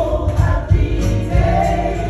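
Gospel singing over an electronic keyboard, amplified through microphones, with a strong bass line under the voices.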